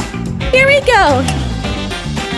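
Background music, with a voice-like gliding exclamation about half a second in that falls steeply in pitch.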